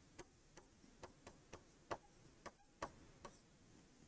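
Near silence with faint, irregular taps and clicks of a pen tip on a writing board as words are written, about eight in four seconds.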